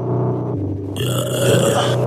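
Instrumental trap beat: low sustained bass and synth notes changing pitch in steps, with a bright hissing wash coming in about halfway through.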